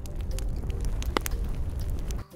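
Recorded campfire ambience from a white-noise track: a fire crackling with scattered sharp pops over a steady low rumble.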